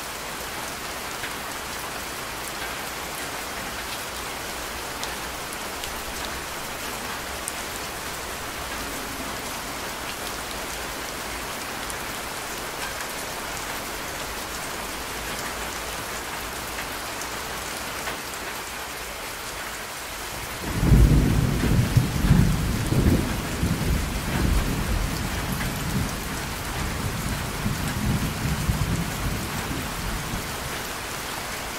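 Steady rain with water streaming off a roof edge. About two-thirds of the way through, a low rumble of thunder breaks in suddenly, the loudest sound here, and rolls on in uneven swells for several seconds, easing off near the end.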